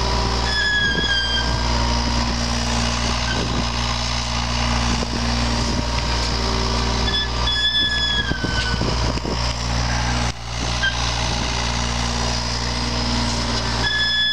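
John Deere 35G compact excavator digging, its diesel engine running steadily under hydraulic load. A high squeal glides slightly down about half a second in, again around eight seconds in, and near the end.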